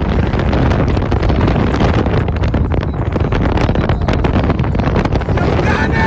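Heavy wind buffeting on a phone microphone held at the window of a moving car, over the car's road and engine noise: a loud, rough, steady rush.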